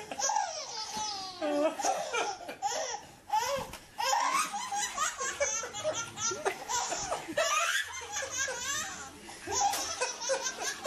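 A baby laughing hard in repeated bursts, with adults laughing along. The laughter breaks off briefly twice.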